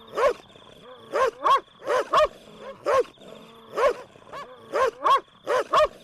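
A dog barking repeatedly, about a dozen short, sharp barks, often in quick pairs, around two a second.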